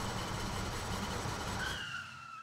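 Steady rumble and noise of a moving vehicle, with a faint whine coming in near the end.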